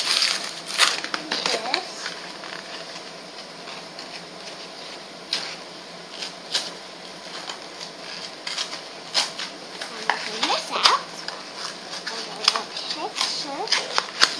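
Clear plastic packaging crinkling and a cardboard package insert being handled and pulled apart: an irregular run of sharp crackles and rustles.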